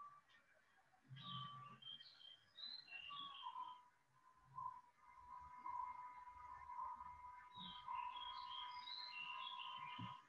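Faint birdsong: two runs of quick, high chirping notes, one starting about a second in and another near the end, over a steady thin tone.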